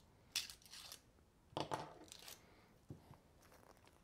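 A crisp fortune cookie being broken open by hand to get at its paper fortune: two short crunching, crackling bursts, about half a second in and again about a second and a half in, then a faint tick as the slip is pulled free.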